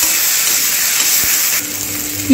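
Sliced onions and chopped tomato sizzling in hot mustard oil in a steel kadhai, with one sharp click about a second in. The sizzle drops somewhat in level near the end.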